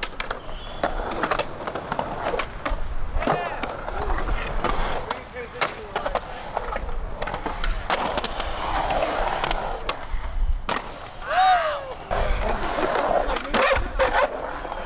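Skateboard wheels rolling and carving on the concrete of a bowl, with repeated sharp clacks of the board and trucks hitting and grinding the coping. A short voice call rises and falls about eleven seconds in.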